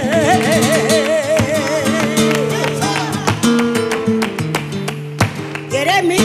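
A woman singing a copla holds a long note with wide vibrato over guitar accompaniment. After about two and a half seconds her voice drops out for a passage of strummed guitar chords, and she comes back in with a rising note near the end.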